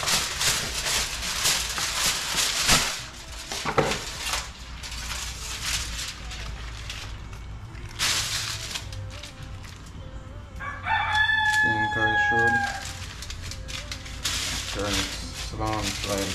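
Aluminium foil being pulled off a roll and crinkled around a fish, loudest in the first three seconds and coming back in patches. About eleven seconds in, a rooster crows once, a call of about two seconds that sags slightly in pitch at the end.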